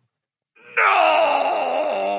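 After a moment of silence, a long groaning voice begins about three-quarters of a second in, sliding down in pitch and then wavering.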